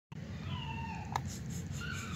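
Two faint, high-pitched meow-like cries, the second one falling in pitch, with a sharp click about a second in.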